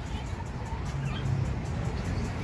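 Steady low rumble of city traffic, with music underneath.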